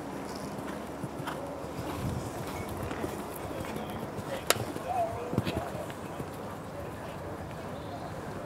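Hoofbeats of a horse cantering on turf under a background murmur of spectator voices, with a single sharp click about halfway through.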